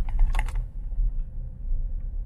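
Steady low rumble of a car rolling slowly, heard from inside the cabin, with a quick run of several sharp clicks in the first half second.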